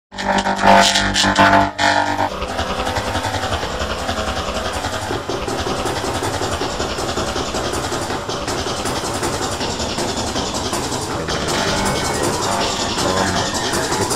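Electronic music soundtrack: loud held chords for about the first two seconds, then a dense, steady track.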